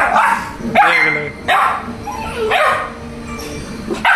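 Pit bull puppy barking, about five short barks in a row.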